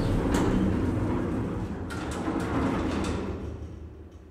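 A low rumbling noise with a few sharp clicks, fading away steadily toward the end.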